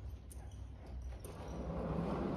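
A horse's hooves falling at a walk on soft dirt arena footing: faint, evenly spaced hoof falls about three a second over a steady low rumble. A louder rushing noise builds up in the second half.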